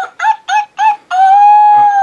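Talking Skye plush toy's speaker playing a short electronic jingle: three quick short notes, then a long held note that falls away at the end.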